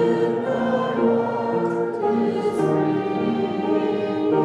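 A group of voices singing a hymn in parts, with slow, held notes.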